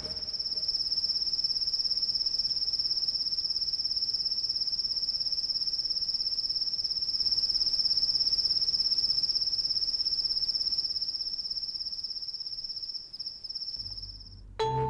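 A cricket trilling steadily at one high pitch, a continuous rapid pulsing chirr that swells a little midway and fades slightly near the end.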